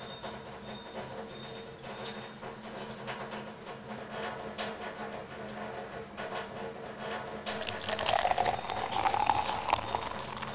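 Water running steadily from a kitchen tap into a stainless-steel sink. Near the end it turns louder and splashier as water pours into a glass from a bottled-water dispenser.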